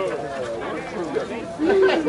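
Indistinct chatter of several overlapping voices, with one voice growing louder near the end.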